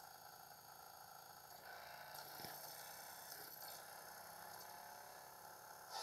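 Near silence: faint room tone, with a slight rise in level about two seconds in.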